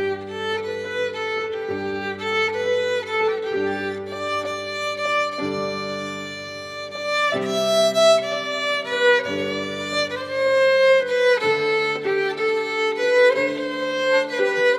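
A violin played by a young soloist, a bowed melody of sustained notes over piano accompaniment whose low chords change every second or two.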